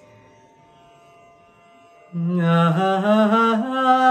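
After about two seconds of quiet, a man starts singing the opening of a Kannada film song, holding long wavering notes that step up in pitch.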